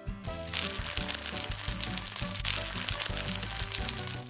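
Background music with a steady crackling hiss laid over it from about half a second in: a cooking sound effect for the rice cooker.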